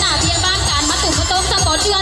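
Amplified backing music with a steady low beat, and over it a woman's voice singing through a microphone, its pitch sliding up and down.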